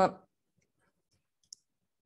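The end of a spoken word, then near silence with one short, high click about one and a half seconds in.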